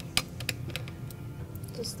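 A few small, sharp clicks and taps as a screwdriver and fingers work at the single screw holding the SSD to an iMac logic board, most of them in the first second.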